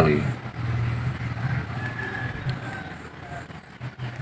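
A low, steady engine hum from a vehicle, loudest about a second in and fading toward the end.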